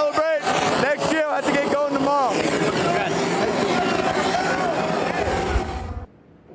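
Loud stadium crowd noise: many voices shouting and cheering at once, with a few loud shouts standing out in the first two seconds. It cuts off suddenly at the end.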